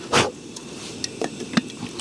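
A short loud sound just after the start, then several light clicks and taps as a lid is fitted onto an aluminium cook pot. Under them runs the steady low rush of the Fire Maple MARS pressure-regulated radiant gas burner, which is exceptionally quiet.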